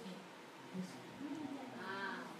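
Faint children's voices in a quiet room, with one high-pitched, drawn-out child's voice near the end.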